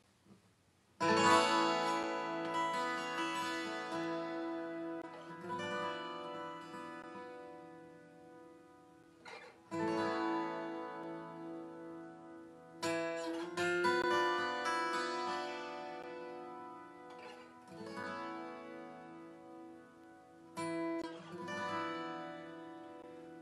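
Twelve-string acoustic guitar playing a slow instrumental introduction to a song. Chords are struck every few seconds and left to ring and fade. It starts about a second in.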